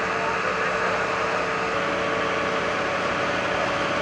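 Steady mechanical drone with a constant hum over a hiss: fire engine pumps running while hoses spray water onto the fire.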